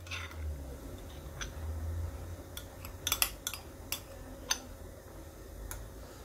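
A spoon scraping and clinking against glass bowls as mayonnaise is scooped out and knocked off into a mixing bowl, with a quick cluster of sharp clinks about three seconds in and a few single ones after.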